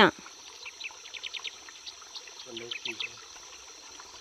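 A bird giving a run of short, high chirps over a steady high insect drone. A faint voice comes in briefly between two and three seconds in.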